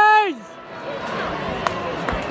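A spectator's long, drawn-out shout, held loud and then sliding down in pitch as it dies away about half a second in, followed by the steady murmur of a stadium crowd with a single sharp knock near the end.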